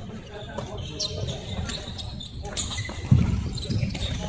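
Badminton play on a wooden sports-hall floor: footfalls, squeaking shoes and sharp racket hits on shuttlecocks, with the loudest thud about three seconds in, among players' voices in the echoing hall.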